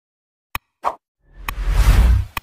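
Subscribe-button animation sound effects: a sharp click, a short pop, then another click and a swelling whoosh with a deep boom that grows loudest near the end.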